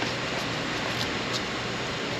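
Steady workshop background noise, like a fan or air handling, with a few faint light clicks.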